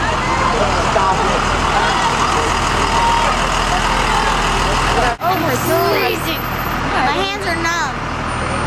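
Steady low rumble of idling bus engines, with people's voices talking and calling out over it; the sound breaks off for an instant about five seconds in.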